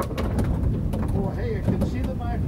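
Steady low rumble of wind buffeting the microphone on an open boat deck at sea, with faint voices in the background during the second half.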